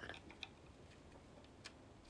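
Near silence: faint room tone with two small, faint clicks, one about half a second in and one near the end.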